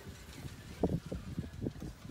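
Irregular low rumbling and buffeting of wind on the microphone, in uneven gusts that pick up about a second in.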